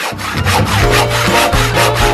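Coping saw sawing with rapid back-and-forth rasping strokes, starting abruptly.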